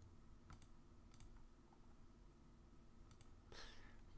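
A few faint, scattered clicks of a computer keyboard and mouse in a near-silent room.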